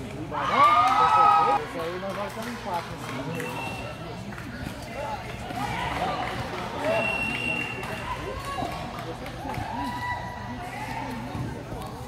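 Voices of young football players and onlookers calling out across an open pitch, with one loud drawn-out shout about half a second in and shorter calls after it.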